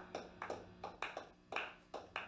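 Light, quiet tapping: short sharp taps, about four a second, unevenly spaced and sometimes in quick pairs, over a faint low hum.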